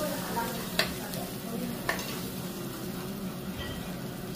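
Korean beef (hanwoo) sizzling as it grills over charcoal, a steady hiss, with two sharp clicks about a second and two seconds in.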